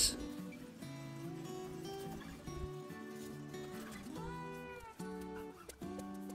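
Background instrumental music: a run of held, pitched notes that change every second or so, played at a low steady level.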